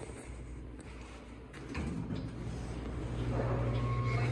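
Low steady hum of a KONE elevator cab, growing louder from about three seconds in as someone steps into the cab, with footsteps and handling noise and one short tone just before the end.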